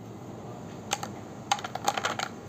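Walnut pieces dropping from a hand into a clear plastic tub: one light click just before a second in, then a quick run of clicks and clatter near the end.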